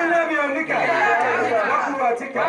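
Speech: a man's voice talking without a break into a handheld microphone.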